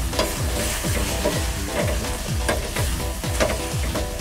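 A wooden spatula stirring and scraping a grated-coconut mixture in a stainless steel pot as it cooks on the stove, in repeated strokes. Background music with a steady low thumping beat plays underneath.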